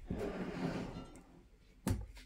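A faint breathy exhale with light handling noise, fading out, then a single sharp knock near the end.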